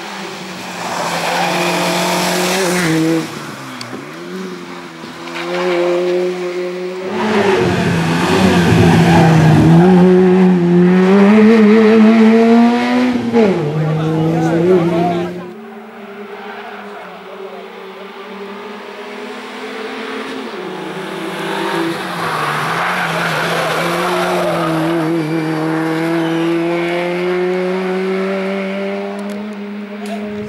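Peugeot 106 racing car's four-cylinder engine revving hard through hairpins, its pitch climbing under acceleration and falling back at lifts and gear changes. Several passes cut together, the loudest in the middle, ending abruptly about halfway, then a second long pass.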